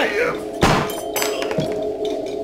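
A single sharp, loud thud about half a second in, followed by two fainter knocks. Laughter trails off at the start, over a sustained music score.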